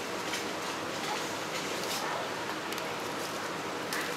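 Steady outdoor background noise with a few faint, brief clicks scattered through it; no monkey calls.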